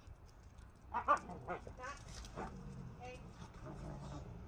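A dog vocalizing in a quick run of short, high whines and yips, loudest about a second in.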